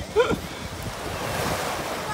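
Small sea waves breaking and washing in over shallow sand, a steady rushing wash that swells about halfway through.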